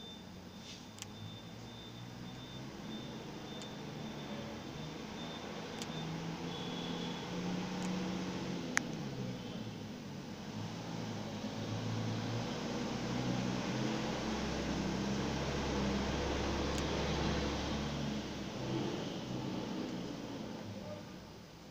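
A steady mechanical hum that swells into a deeper low rumble in the second half, with a single sharp click about nine seconds in.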